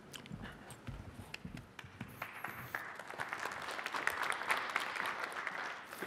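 Audience applauding, the clapping swelling a couple of seconds in and thinning out near the end. A few soft low thuds come before it, in the first two seconds.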